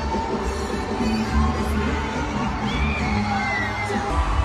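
Concert music playing over a stadium sound system, with a heavy bass and a crowd cheering over it.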